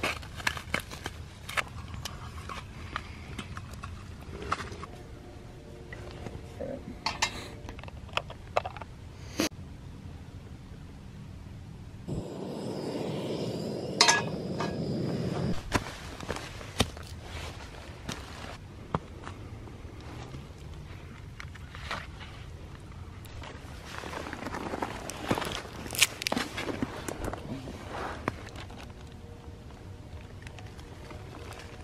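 Camp cooking gear handled on snow and dry leaves: scattered clicks, knocks and rustles, with a louder steady rushing noise for about three seconds near the middle.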